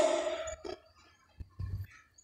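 A man's voice through a loudspeaker dying away over the first half second as his phrase ends, then near silence broken by a few faint, short low knocks.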